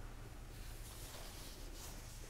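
Quiet room tone with a faint, steady low hum and no distinct event.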